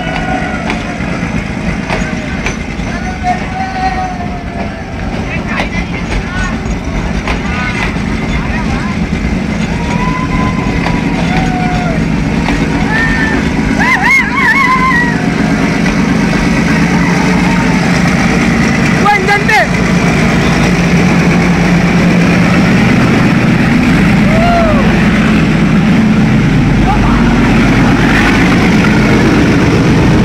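Passenger train rolling past with a steady rumble of wheels on rail and a diesel locomotive's engine that grows louder over the second half as the engine end draws near. Passengers riding on the roof and in the doorways shout and whoop over it.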